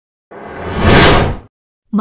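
A whoosh transition sound effect: a noisy swell that builds to a peak about a second in, then dies away quickly.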